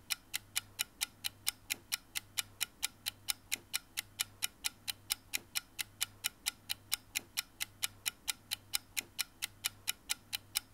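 Rapid, perfectly even ticking like a clock, about four and a half ticks a second, over a faint low hum.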